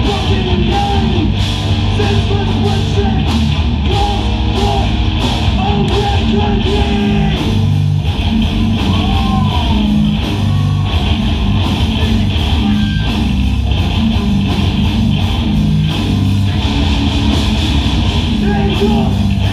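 Hardcore band playing live at full volume: distorted electric guitars, bass and drums. A steady hit lands about twice a second for the first seven seconds, then the playing gets busier.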